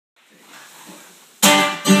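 Faint room hiss, then about one and a half seconds in two acoustic guitars come in together with a loud, sudden strummed chord, followed by a second strum half a second later: the opening of the song.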